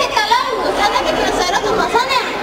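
Overlapping chatter of several girls' voices, with giggling.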